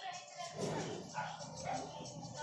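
A Telugu film song playing from a phone's music player: sung vocals with backing music.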